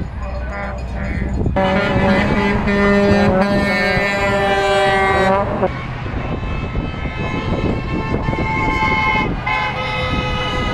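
Vehicle horns on a highway honking in long held blasts: one loud blast lasting about four seconds starting near the 1.5-second mark, then a second horn held from about 7 to 9 seconds. Continuous traffic rumble underneath.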